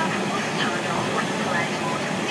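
Steady rumble and hiss inside an airliner cockpit while taxiing, with faint indistinct voices over it.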